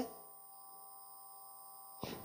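Faint, steady electrical hum with a few thin constant tones, the background of an amplified lecture-room sound system.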